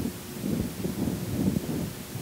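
Low background room noise: a faint, uneven low rumble with no distinct event.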